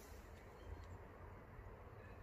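Near silence: faint outdoor background with a low rumble.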